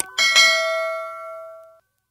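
Notification-bell sound effect of a subscribe-button animation: a bright bell chime struck twice in quick succession about a fifth of a second in, ringing out and fading to silence before the end. A short click comes right at the start.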